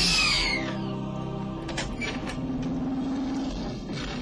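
Film trailer soundtrack: a high, falling screech right at the start, then low sustained music notes with a few faint clicks.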